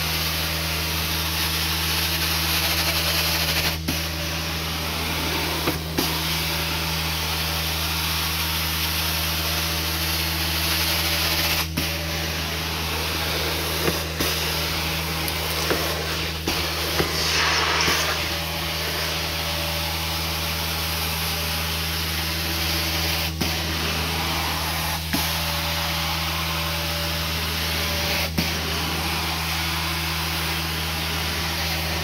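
Carpet-cleaning extraction wand, a TMF swivel wand with a 14-inch head, drawn across carpet under steady vacuum suction with the hiss of the spray, with a low steady hum under it. The sound is broken briefly by a few short clicks or dips as the wand is worked.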